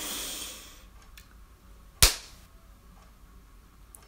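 A short hiss that fades within the first second, then one sharp crack about two seconds in.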